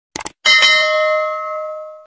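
Two quick mouse-style clicks, then a notification bell sound effect dings once and rings on, fading away over about a second and a half.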